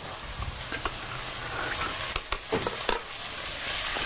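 Gyoza sizzling as they brown in an oiled nonstick pan on a gas burner, the steaming water cooked off. A few sharp clicks come through the sizzle in the first three seconds.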